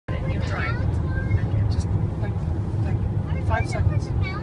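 Steady low rumble of a car's road and engine noise while driving through a highway tunnel, heard from inside the car.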